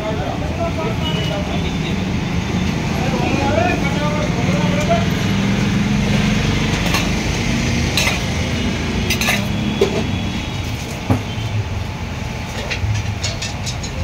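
Busy street-food stall ambience: background voices and steady traffic hum, with a few sharp metal clinks of steel utensils against the iron griddle in the second half.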